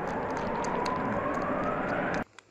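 A steady rushing noise with a faint whine that rises slowly in pitch, then cuts off suddenly.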